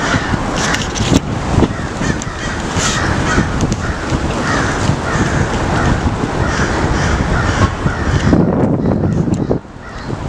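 A flock of crows cawing, harsh calls repeating about every half second to second over a dense, noisy background. The sound drops off sharply near the end.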